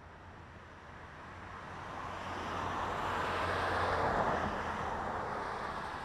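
A car passing on a road, its noise swelling gradually to a peak about four seconds in and then easing off.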